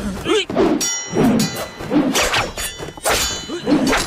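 Swords clashing in a fight: several sharp metallic clangs, each left ringing.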